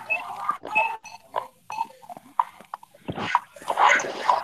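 A child's short non-speech vocal noises and breaths right up against a laptop microphone, coming through a video call, with a louder breathy burst about three seconds in.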